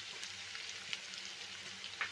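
Sliced onions frying in hot oil in a frying pan, just added: a steady sizzling hiss with scattered small crackles.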